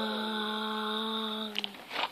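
A girl's voice holding one long sung note at a steady pitch, which stops shortly before the end, followed by a few light handling clicks.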